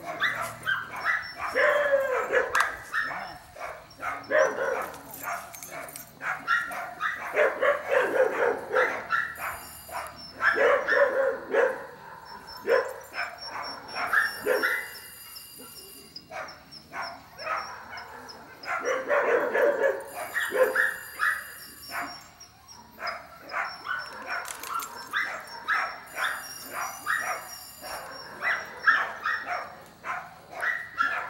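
A dog barking and yipping repeatedly in bursts of short, high calls, with brief pauses between the bursts.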